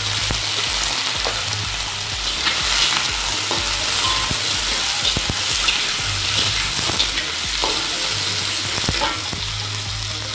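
Diced onion sizzling in hot oil in a wok, with a steady hiss, stirred with a slotted metal spatula that scrapes and clicks against the pan now and then.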